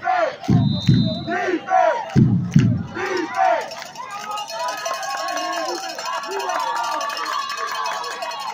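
Football crowd in the stands chanting "Defense!" twice in rhythm, then many voices shouting and cheering together from about three seconds in.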